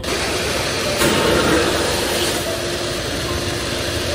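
A loud, steady rushing hiss from a confetti blower shooting confetti into the air. It starts suddenly and grows louder about a second in, with music playing faintly underneath.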